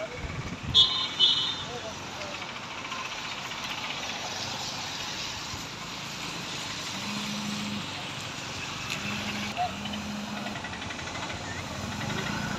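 Road traffic on a highway: a steady wash of vehicle noise, with two short, loud, high-pitched toots about a second in and a few short low tones later on.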